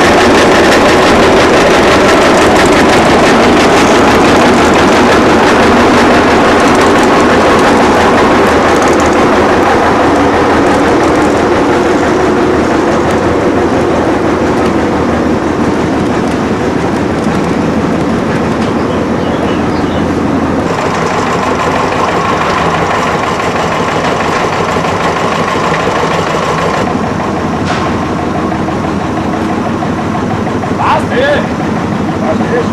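Old tractor's engine running loud and steady while it pulls a wooden wagon, heard close up from on board, easing off gradually towards the end.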